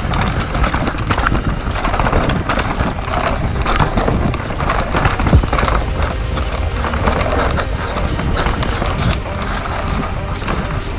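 Downhill mountain bike running fast over a dirt forest trail: tyres rolling and skidding on soil and stones, with continual rattle and knocks from the chain, frame and suspension over roots and rocks. The hardest knock comes about halfway through.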